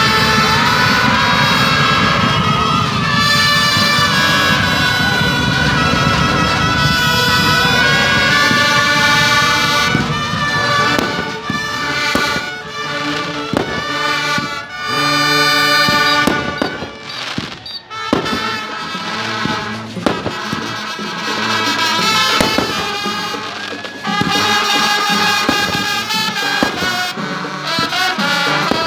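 Marching band playing, with trumpets and saxophones carrying the tune. From about the middle on, sharp cracks and bangs of fireworks break in over the music again and again.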